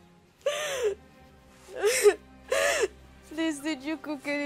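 A young woman making wordless vocal sounds: three loud, breathy gasps in the first three seconds, then a high, wavering whimper near the end.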